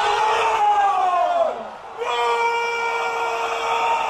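A football commentator's long, drawn-out shout as a free kick is taken: one call that rises and falls in pitch, a brief break a little after a second and a half, then a second note held high and steady.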